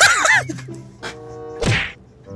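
A man laughing loudly in a few rising-and-falling bursts, then melancholy background music holding a steady note. Near the end comes a single sharp slap-like hit.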